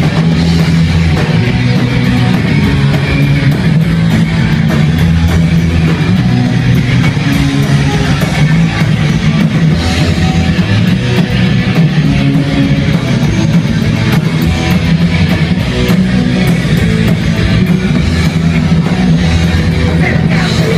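A live rock band playing loud and steady, with bass guitar, guitars and a drum kit.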